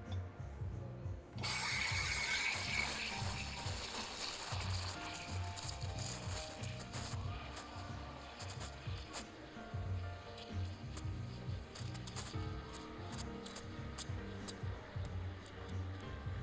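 Victoria Arduino espresso machine's steam wand hissing in a pitcher of milk, switched on about a second in. The hiss is loudest for the first few seconds, then settles to a steadier, quieter hiss as the milk heats, over background music with a steady beat.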